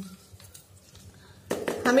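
Faint rustle and light ticks of hands spreading granulated sugar over lemon pieces in a container, then a short clatter of the container being handled about one and a half seconds in.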